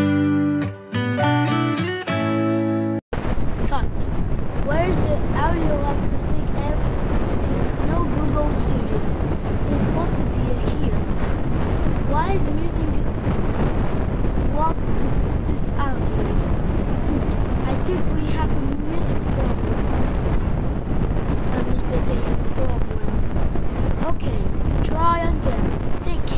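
A short musical logo jingle of a few clear notes plays for about three seconds and cuts off abruptly. It is replaced by a loud, steady rushing noise with scattered short squeaky rising sounds.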